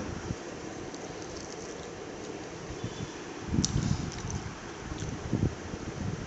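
Close-up chewing of crispy fried chicken: a few soft, muffled bursts about three and a half seconds in and again near five seconds. A steady low room hum runs underneath.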